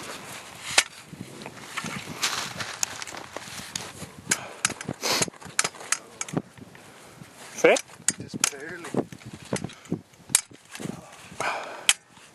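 A high-lift farm jack being set and worked by hand in the snow: a run of irregular metal clicks and knocks, with snow crunching underfoot.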